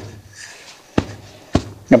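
Two short, sharp clicks about half a second apart in a quiet pause, then a man's voice starts again near the end.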